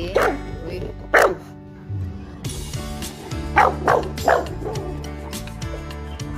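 A dog barking during rough play: two single sharp barks about a second apart, then three quick barks in a row a little past the middle, over background music.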